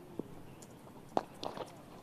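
Quiet cricket-ground ambience with one sharp crack a little over a second in: a cricket bat striking the ball for a lofted shot. A few fainter short knocks come before and after it.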